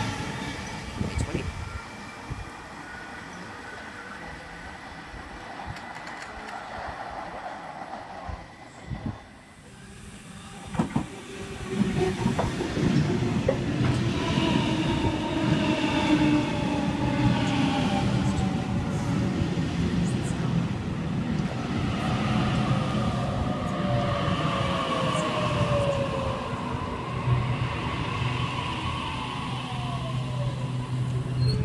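Sydney Trains Waratah electric train at the platform, quieter at first. From about eleven seconds in it grows louder as it moves, its traction motors whining in gliding tones over the wheel noise.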